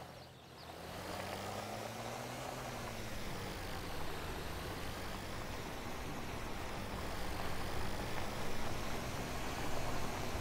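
Cartoon sound effect of small truck engines running as they drive: a steady low hum whose pitch wavers slowly, dipping briefly at the start.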